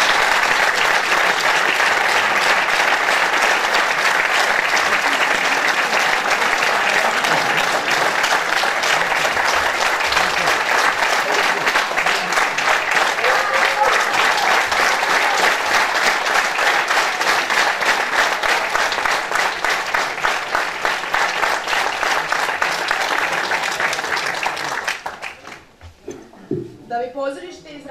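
Audience and performers applauding steadily, a dense clapping that dies away shortly before the end.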